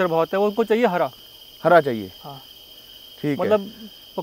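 A man talking in short phrases over a steady, high-pitched chirring of insects.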